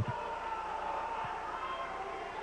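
Arena ambience around a wrestling ring with two dull thumps, one at the start and one just past a second in, over a faint crowd and a steady thin tone.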